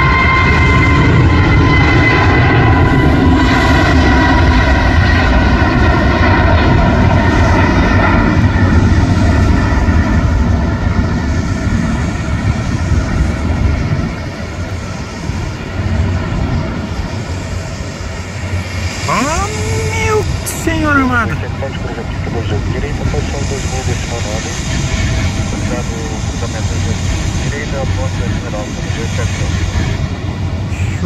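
Airbus A321neo jet engines at takeoff power as the airliner runs down the runway and climbs away: a loud roar with whining tones that fall in pitch as it passes, the roar dropping off about twelve seconds in and going on more softly as it climbs.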